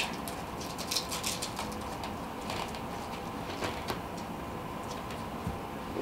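Faint, scattered light clicks and rustles of hands handling tools and materials at a fly-tying bench, over a faint steady hum.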